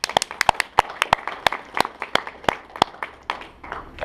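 Scattered applause from a small audience: a few people clapping, each clap distinct, thinning out near the end.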